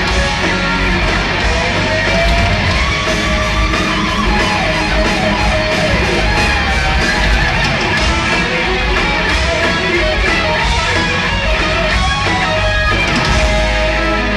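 A heavy metal band playing live at full volume: distorted electric guitars over bass and drums. A low held bass note comes in near the end.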